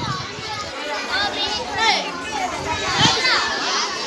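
A group of young children chattering and calling out over each other, with shrill, high-pitched shouts about two and three seconds in.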